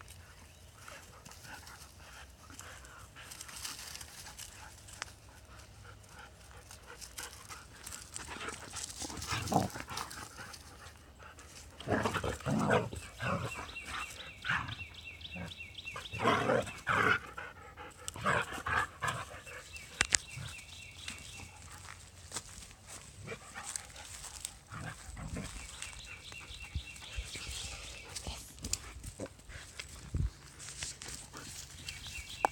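Animal sounds, loudest in a cluster of calls and knocks about twelve to seventeen seconds in.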